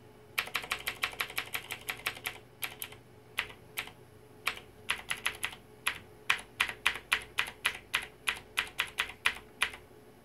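Quick, irregular clicking in runs of several clicks a second, broken by short pauses.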